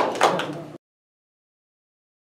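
A small group clapping, cut off abruptly under a second in, followed by dead silence.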